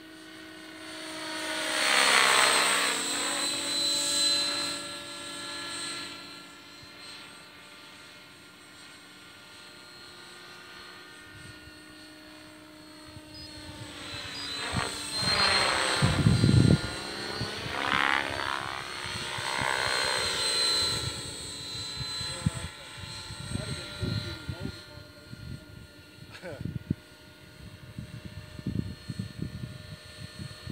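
Outrage Fusion 50 electric RC helicopter in flight, its motor and rotor whine sweeping in pitch and loudness as it passes close. It is loudest about two seconds in and again from about fifteen to twenty-one seconds in, with irregular low thumps in the later part.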